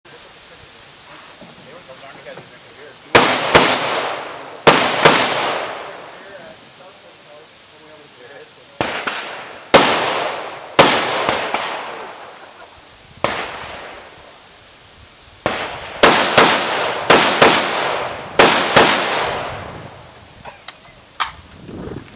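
AR-15 rifle firing a string of about eighteen shots, starting about three seconds in. The shots come singly and in quick doubles and triples with pauses between, each echoing briefly.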